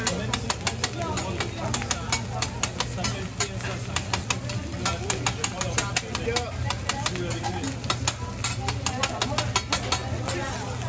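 Metal spatulas clacking and scraping on a steel teppanyaki griddle as fried rice is chopped and turned, in rapid irregular clicks several a second, over a steady low hum.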